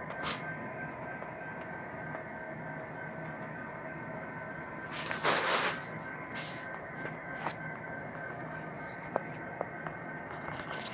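Model train running on a layout, a steady hum with several held tones. A loud, brief rushing noise comes about five seconds in, and scattered sharp clicks follow near the end.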